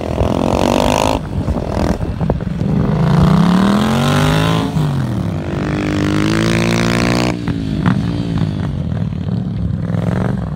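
Motorcycle engines revving up and down as the bikes accelerate and slow through tight turns; the pitch climbs and falls several times, and the louder, higher part drops away about seven seconds in.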